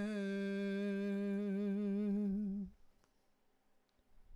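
A man's voice holding one long, steady note with no accompaniment, the final held word of the song, wavering slightly near its end and stopping about two and a half seconds in.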